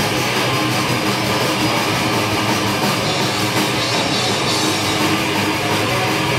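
Punk rock band playing live: electric guitars, bass guitar and drum kit together, loud and steady without a break.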